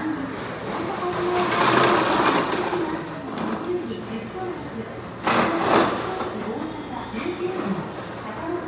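Indistinct voices in a busy waiting room, with two louder bursts of hiss-like noise: one swelling about a second and a half in, and a sharper one starting suddenly about five seconds in, the loudest moment.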